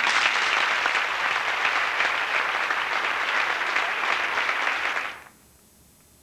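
Audience applauding in a hall, starting suddenly as the music ends and dying away about five seconds in.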